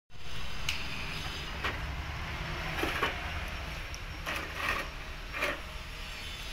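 Metal tools knocking and clinking against a bus's wheel hub and brake parts, about six sharp strikes at irregular intervals, some with a short ring, over a steady low rumble.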